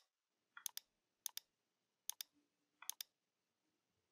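Computer mouse button clicking four times, each a quick press-and-release double click, about three-quarters of a second apart.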